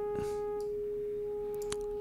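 Bitwig Phase-4 software synthesizer sounding one steady held note, a nearly pure sine-like tone with faint overtones.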